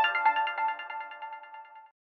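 News channel's electronic intro jingle ending: a held chord of bright tones with a few quick notes rings out and fades away, dying out shortly before the end.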